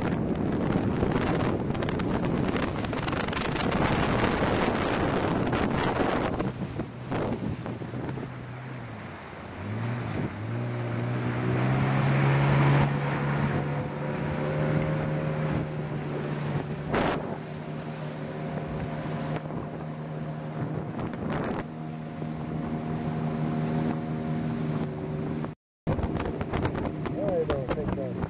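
Outboard motor of a wooden river longboat running under way, with the rush of water and wind on the microphone; about ten seconds in the engine note dips, then climbs and holds steady at a higher pitch. A couple of short knocks sound over it, and the sound cuts out briefly near the end.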